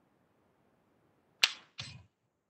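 A sharp click about one and a half seconds in, followed a moment later by a second, duller knock, against a near-silent room.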